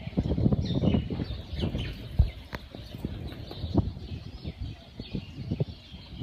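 Birds chirping in short sweeping calls over irregular low thuds and rumbling.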